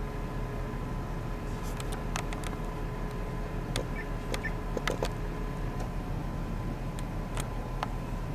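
Steady low hum with two faint steady whining tones and scattered small clicks, most of them in the middle: the handheld camcorder's own running noise and handling.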